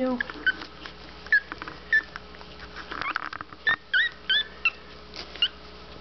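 Newborn Morkie (Maltese–Yorkshire terrier cross) puppies squeaking and whimpering: a string of short, high-pitched squeaks, some coming in pairs.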